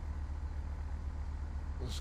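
Flight simulator's engine sound for a single-engine propeller plane idling, with the throttle at the idle position: a steady low drone with a fine even pulse, turned down low.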